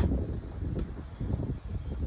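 Low, uneven rumble like wind buffeting a microphone.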